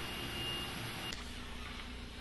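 Steady background hiss of room tone, with a faint high whine that stops about a second in.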